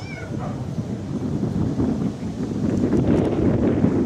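Wind buffeting the microphone: a low rumble that grows louder over the few seconds. A brief high, wavering cry at the very start.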